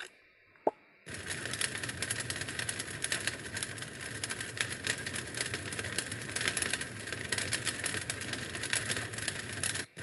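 A single short plop, then from about a second in a steady, dense crackle of flames, cutting out briefly just before the end.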